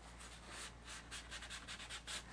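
Faint rubbing of a folded paper towel dragged very lightly across wet watercolour paper, lifting paint back toward the white paper to form thin clouds; a quick run of soft strokes.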